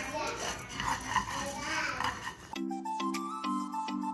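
Dry lisan el asfour (orzo) pasta being stirred with a wooden spoon in a non-stick frying pan, the grains rustling and scraping as they toast. About two and a half seconds in, this gives way abruptly to background music with repeating notes.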